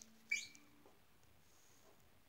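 Near silence after the last guitar note dies away, broken by one short, high squeak that rises in pitch about a third of a second in.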